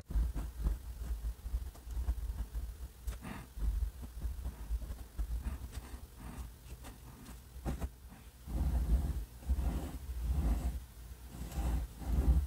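Untipped flex nib of a Noodler's Ahab fountain pen scratching across paper as it writes cursive strokes, with a few small clicks. The strokes are faint at first and come in louder swells over the last few seconds.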